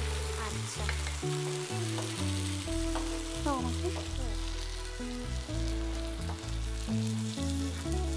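A thin sauce sizzling and bubbling in a frying pan while a spatula stirs it, a steady hiss throughout. Low background music notes change step by step underneath.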